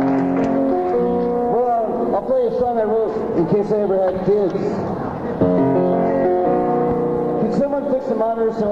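Live band music: instruments holding sustained chords, with a voice singing over them for a few seconds in the middle before the chords come back about five and a half seconds in.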